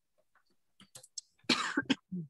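A person coughs once, short and loud, heard through a video-call microphone, after a few faint clicks.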